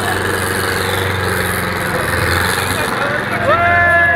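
Small car engine running steadily, with a group of voices shouting and chattering around it; from about three and a half seconds in, loud repeated shouted calls.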